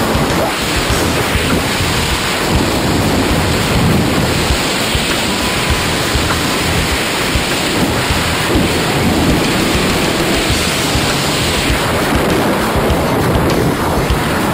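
Loud, steady wind noise rushing over a hand-held camera's microphone in a tandem skydive freefall.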